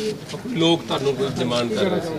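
A woman's voice speaking, continuing her answer without a break.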